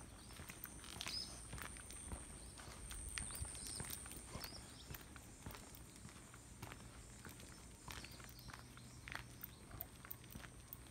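Footsteps of a person and a dog walking on a paved path, faint, with scattered light clicks and a thin, steady high-pitched tone underneath.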